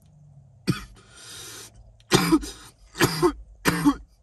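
A man coughing: one cough about half a second in, a breath out, then three hard coughs in the second half.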